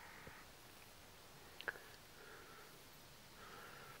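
Near silence: faint outdoor ambience, with a single faint tick about one and a half seconds in.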